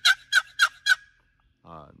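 A turkey box call played in a series of hen yelps: evenly spaced notes, about four a second, stopping about a second in.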